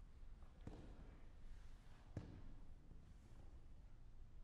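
Near silence: hall room tone with two faint knocks about a second and a half apart.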